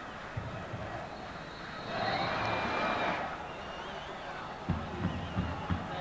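Faint stadium crowd noise from a football match broadcast, with a brief swell of crowd sound about two seconds in and a few low thumps near the end.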